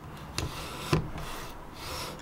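Veritas router plane's flat iron shaving the floor of a groove in wood: a dry, steady scraping as the plane is pushed along the cut, with two sharp clicks about half a second and a second in.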